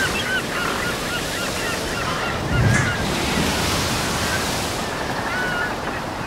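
Seaside ambience: steady surf and wind with gulls calling over it in many short cries. A louder low rush comes about two and a half seconds in.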